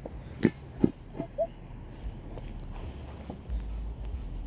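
A few soft knocks, then a brief high little vocal sound from a toddler about a second and a half in, with low wind rumble on the microphone near the end.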